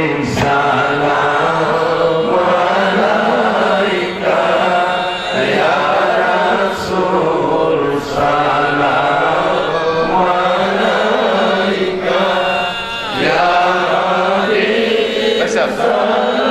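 Melodic Islamic devotional chanting by a man's voice through a loud public-address system. It comes in long held, rising and falling phrases with a few short breaks between them.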